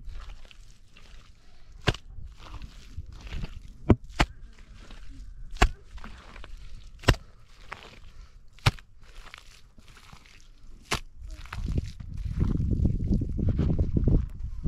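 Bare hands scooping and kneading wet mud on stony ground, making soft squelching and crumbling noises. Sharp knocks come roughly every second and a half. A louder low rumble sets in near the end.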